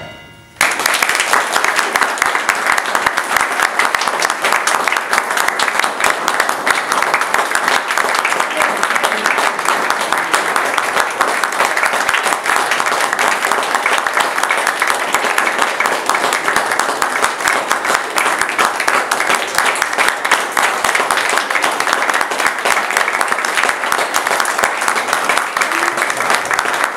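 A small wind band's last note dies away, then audience applause starts abruptly about half a second in and carries on steadily.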